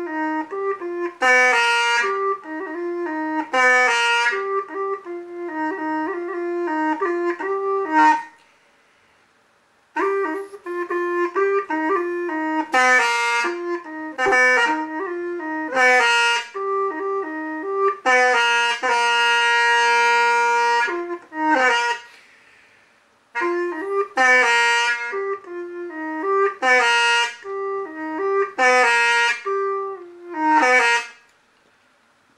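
Hmong bamboo pipe (raj) played solo: a slow, ornamented melody in phrases with a reedy tone. It breaks off twice, about 8 s and 22 s in, with one long held note just before the second break.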